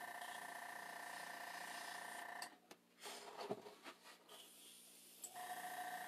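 Faint steady whine of a small airbrush air compressor. It stops about two and a half seconds in and starts again near the end, with a couple of light clicks in the pause.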